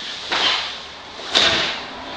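Two quick swishes of a karate gi's cotton cloth during fast kata moves. The second, about a second and a half in, ends in a sharp smack.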